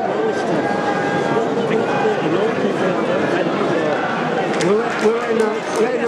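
Many voices talking and calling over one another, with a few sharp hits from about four and a half seconds in.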